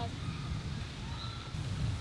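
Quiet outdoor background noise: a low rumble, with a faint thin tone now and then.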